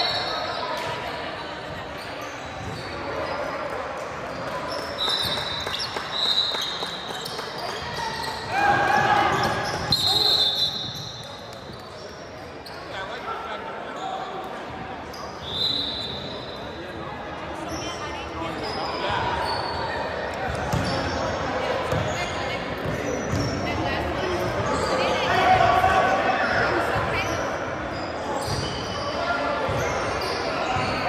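Basketball game play in an echoing gym: a ball bouncing on the hardwood floor, sneakers squeaking several times, and players and spectators calling out indistinctly.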